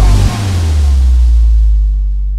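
Trip-hop music as the vocal drops out. A deep sub-bass note slides down in pitch and then holds, under a high hiss-like wash that fades away.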